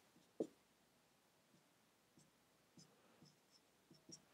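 Dry-erase marker writing on a whiteboard: a few faint, short strokes, the clearest about half a second in, with near silence around them.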